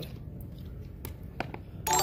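Quiet room noise with a few faint clicks. Near the end, a livestream notification alert cuts in suddenly: a bright, chiming jingle of many held ringing tones, the new-subscriber alert.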